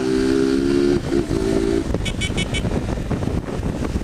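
Honda motorcycle engine running at a steady cruise over road and traffic noise, its drone breaking off about two seconds in. Then come four quick high-pitched beeps in a row.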